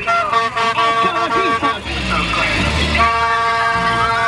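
Plastic vuvuzela blown in long, steady blasts over shouting voices, with one unbroken blast from about three seconds in.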